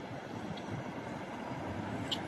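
Steady road-traffic noise from cars passing through a city intersection: a continuous rush of engines and tyres.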